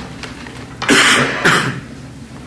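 A person clearing their throat twice in quick succession: two short, rough bursts about a second in, the second about half a second after the first.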